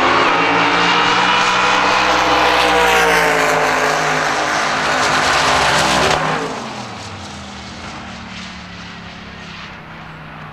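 Drag-racing engines at full throttle down the strip, led by the Outlaw 10.5 Ford Cortina: a loud, dense engine note rising in pitch for the first few seconds, then easing lower. About six seconds in it drops away suddenly to a much quieter, steady engine sound.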